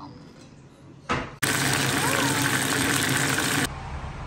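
A loud, steady rushing hiss that cuts in suddenly about a second and a half in and cuts off just as suddenly near the end, with a short sharp noise just before it.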